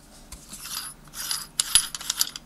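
The threaded rear mount of a Hanimex 28 mm lens being turned by hand to unscrew it: dry metal scraping and clicking in short spurts, with a sharp click near the end.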